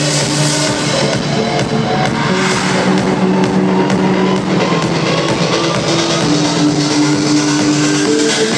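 Electronic dance music from a DJ set played loud over an arena sound system, with sustained synth chords that change every second or two. The deep bass is missing from the recording.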